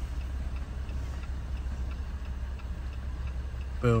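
Diesel vehicle engine idling with a steady low hum, with a faint regular ticking of about three ticks a second.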